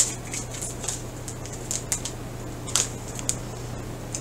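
Tarot cards being handled: a scattering of light, sharp card clicks and slides as a card is drawn from the deck and laid on the table.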